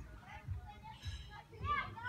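A child's voice calling out in play, its pitch rising and falling, loudest near the end, over low thumps.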